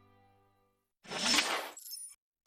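Sustained music fading out, then about a second in a loud shattering, glittery sound effect, a TV title-card transition, trailing off in a few high tinkling tones.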